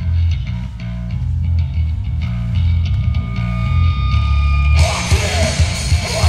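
Live hardcore band starting a song: a low guitar and bass riff played in heavy pulses, then drums and cymbals come in with the full band near the end.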